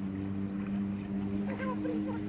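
A steady, low engine drone holding an even pitch, with distant voices of bathers calling out about a second and a half in.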